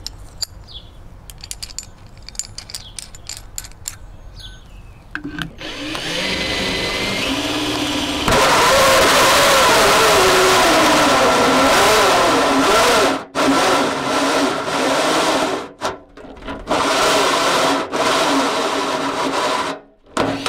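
Light clicks and clinks as a bimetal hole saw is fitted to a cordless drill. About five seconds in, the 19.2-volt cordless drill starts up. From about eight seconds the hole saw is cutting through the downspout, loud, with the motor's pitch wavering under the load, and the drill stops briefly a few times before the cut is finished.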